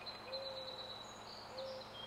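Faint outdoor ambience with a bird's low cooing call: long notes held at one pitch, repeated about three times. High, thin chirps of other birds sit above it.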